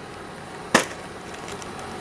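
A single short knock a little under a second in: a cardboard cereal box being set down. A faint steady background noise runs under it.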